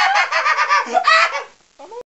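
A man laughing loudly in quick, high-pitched pulses, cut off about one and a half seconds in, followed by a short vocal sound near the end.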